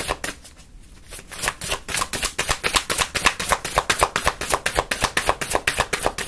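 A tarot deck being shuffled by hand: a fast run of crisp card slaps, about five a second, with a short pause near the start before the shuffling picks up again.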